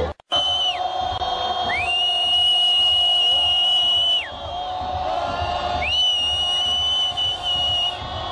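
A whistle sounding in three long, steady high notes, the second and third held for about two seconds each, each sliding up into pitch and falling away at the end, over stadium crowd noise.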